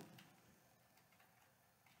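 Near silence: room tone in a pause between sentences of speech.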